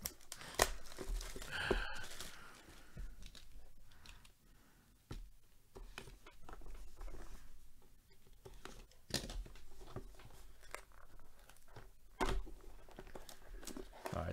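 Plastic shrink wrap crackling and tearing as it is pulled off a cardboard trading-card box. This is followed by scraping and rustling as the box's seal is cut and the box is handled open, with a short pause about halfway through.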